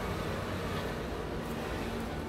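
Steady rushing background noise with a faint low hum and no distinct events.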